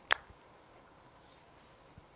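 A single short, sharp click right at the start, followed by faint room tone.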